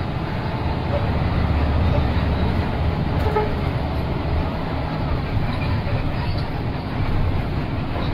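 Steady engine and road noise heard inside the cabin of a bus moving slowly, slightly louder early on.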